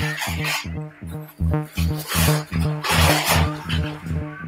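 Electronic music from patched modular synthesizers: a low pitched note pulsing about four times a second, with swells of hissy noise over it, the loudest from about two to three and a half seconds in.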